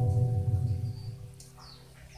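Acoustic guitar's final chord ringing out and fading away, with a few faint, high bird chirps in the background about a second in and near the end.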